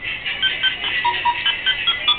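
A simple electronic tune of short beeping tones at changing pitches, several a second, from a small handheld electronic device.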